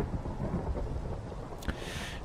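Rain-and-thunder ambience: a steady hiss of rain with a low, continuous rumble of thunder underneath.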